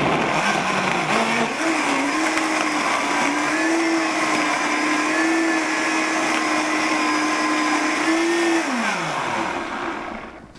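Vita-Mix high-speed blender pureeing vegetables and water into a thick soup. The motor climbs in pitch over the first second or so, runs steadily, then is switched off about eight and a half seconds in and winds down with a falling whine.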